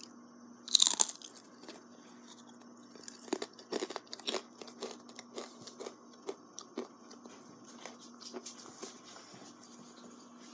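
A buffalo-sauce-dipped pretzel bitten with one loud crunch about a second in, then chewed with a run of irregular crunches for several seconds.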